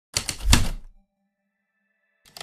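Typewriter sound effect: a quick run of about four key strikes, the last the loudest with a low thump, followed by a faint held tone that dies away.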